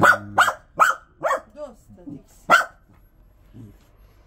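A dog barking: a quick run of four sharp barks in the first second and a half, a few fainter yaps, then one more loud bark about two and a half seconds in.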